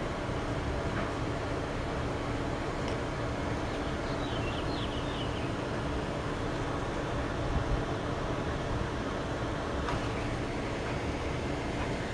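Steady background hum and noise with a low constant tone, no distinct event, and a faint bump about two-thirds of the way through.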